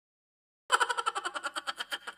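An edited-in sound effect: a rapid run of short, evenly spaced strikes, about nine a second, starting about two-thirds of a second in and fading away at the end.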